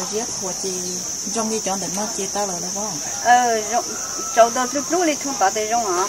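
Steady, high-pitched insect chirring runs throughout, with people talking over it, most loudly in the second half.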